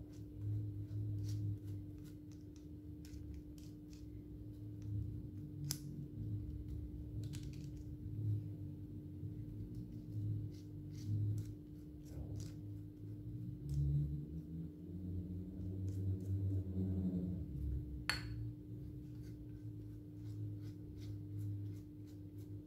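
Light scattered clicks and taps of a silicone pastry brush dabbing egg wash onto soft dough shapes on a baking tray, over a steady low hum and intermittent low rumbling handling noise.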